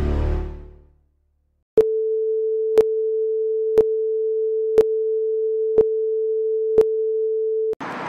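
Music fades out, and after a short silence a film-leader countdown effect starts: one steady mid-pitched beep tone with a sharp tick once a second. It runs for about six seconds and cuts off suddenly.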